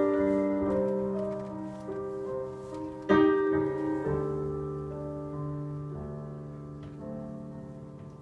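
Piano playing a slow introduction: held chords, with a fresh chord struck about three seconds in, then slowly fading.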